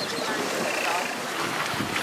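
Steady wind noise on the microphone aboard a small boat on the sea, with faint voices in the background.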